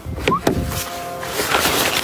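A car door being opened: the handle and latch click twice in quick succession, followed from about a second and a half in by a rough rustling noise as the door swings open. A whistled tune sounds under the clicks.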